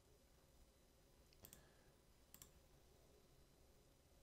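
Near silence, broken by two faint computer-mouse clicks about a second apart, each a quick double tick.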